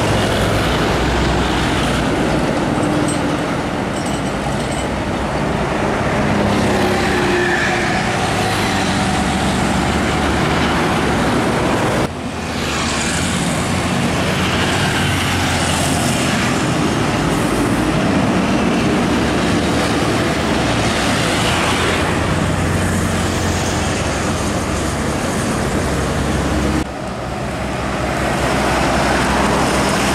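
Roadside highway traffic: heavy lorries and motorcycles passing, with engines running and tyre noise rising and falling as each goes by. The sound breaks off abruptly twice and resumes.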